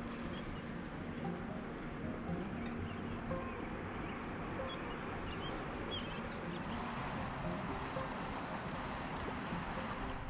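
Shallow river running over a gravel bed: a steady rush of water, with a few faint high chirps about six to seven seconds in.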